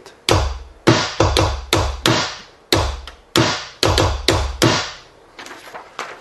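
E-mu Drumulator drum machine playing hand-triggered bass drum and snare samples: about a dozen sharp hits in an uneven pattern over the first five seconds. The sounds are mixed across EPROM banks, with a bass drum from a custom bank alongside a snare from another bank.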